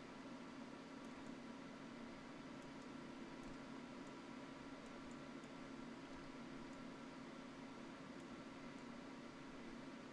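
Steady low hum and hiss of microphone and room noise, with faint, scattered computer-mouse clicks.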